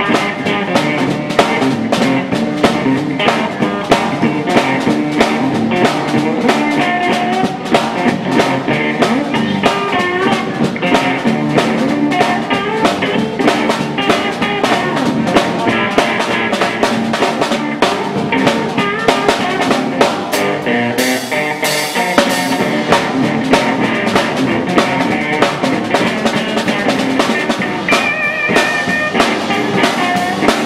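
Live blues from an electric guitar and a drum kit, the drummer keeping a steady beat on snare and cymbals under the guitar.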